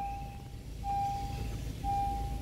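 Electronic warning chime in a 2022 Honda Ridgeline's cabin: a single steady beep, each tone held for most of a second and repeating about once a second, over a low background rumble.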